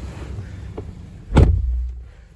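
A single loud thump about a second and a half in, over low rumbling.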